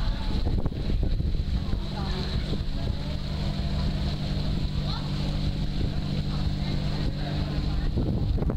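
Engine of a junk-style tour boat running with a steady low drone as the boat passes close by, over a low rumble of wind on the microphone.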